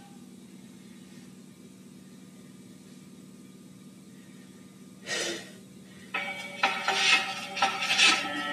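Quiet room tone with a steady low hum between songs, a short breath about five seconds in, then a backing track of pitched instruments with a beat starts about six seconds in.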